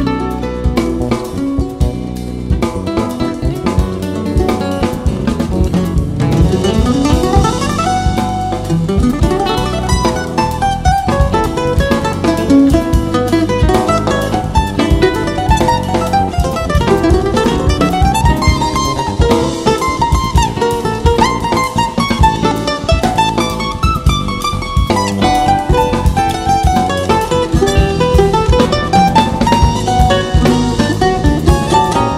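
Instrumental quartet music: a 10-string bandolim and a nylon-string acoustic guitar playing over drum kit and bass. Several quick rising runs of notes.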